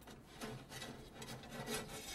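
Faint rubbing, scraping sound effect of a thin wire-like strand being slid down the outside of a car door toward keys on the ground.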